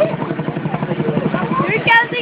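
Boeing CH-47 Chinook tandem-rotor helicopter flying overhead, its rotors beating in a rapid, steady chop. Voices sound over it, with a high shout near the end.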